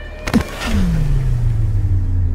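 Dramatic soundtrack stinger: a sharp hit about a third of a second in, then a deep tone that slides down in pitch and settles into a steady low drone.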